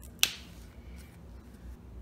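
A single sharp click about a quarter second in, a small hard object snapping or tapping shut, over a faint low room hum.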